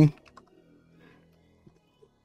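Typing on a computer keyboard: a few faint, scattered key clicks as a file name is typed in.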